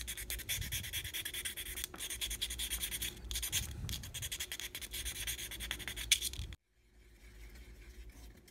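Hand sanding the end of a thin wooden moulding strip with a small piece of abrasive, a fast scratchy back-and-forth rubbing that stops suddenly near the end.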